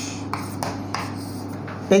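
Chalk writing on a blackboard, in a series of short scratching strokes, over a steady low hum.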